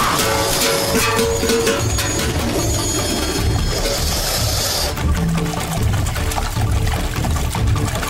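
Dramatic background score with a low pulsing beat, layered with a swelling hiss-like effect that cuts off suddenly about five seconds in.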